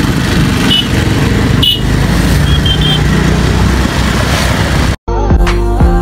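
Wind and engine noise from riding on a motorcycle in road traffic, with a few short high chirps. About five seconds in, it cuts off suddenly and background music starts.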